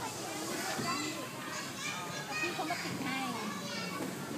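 Several young children chattering and calling out, their high voices overlapping, with children playing in the background.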